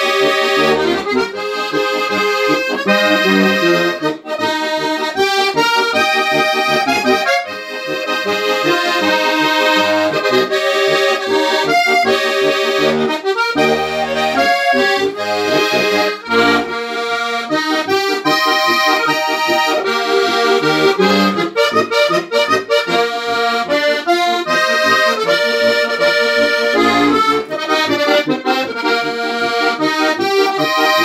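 Solo Tolar diatonic button accordion playing a traditional folk tune: chordal melody over a steady pulsing bass, with brief dips in level as the bellows change direction.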